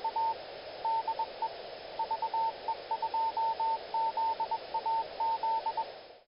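Morse code (CW) tone keyed in a quick run of dots and dashes, with short pauses between groups, over steady radio-receiver hiss.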